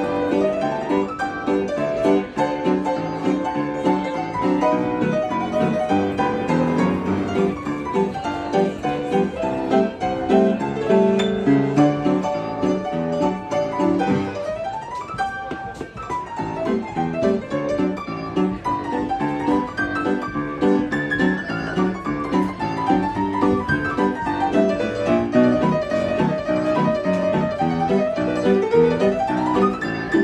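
Upright piano playing ragtime, with a short dip in loudness about halfway through.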